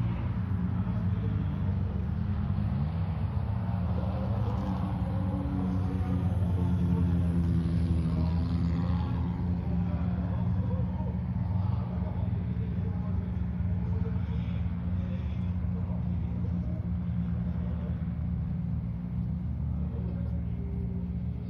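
Rally car engine running, mostly at a steady pitch, with a brief rise and fall in pitch about three seconds in.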